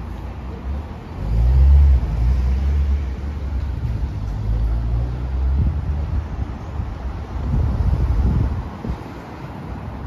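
Road traffic passing on the street: a low engine rumble that swells up about a second in, is loudest near two seconds in, swells again around eight seconds and fades near the end, over a steady hiss of city traffic.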